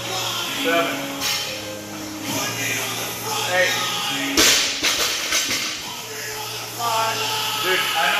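Background music with singing; about four and a half seconds in, a single loud crash as a 115 lb barbell is dropped from overhead onto the gym floor after a set of thrusters.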